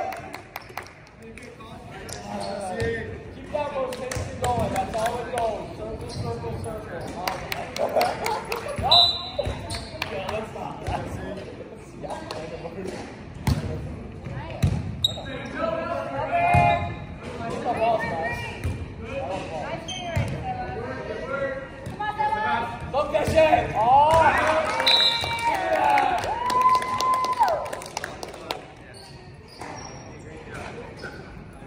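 Indoor volleyball play in a large gym: players' voices calling out and talking, mixed with repeated thuds of the ball being struck and bouncing, echoing in the hall.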